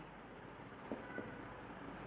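Marker pen writing on a whiteboard, faint, with two light ticks about a second in.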